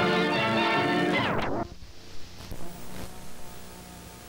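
TV theme music playing, then about a second and a half in its pitch slides sharply downward and it cuts out, like a tape slowing to a stop. A low hum with a few clicks follows.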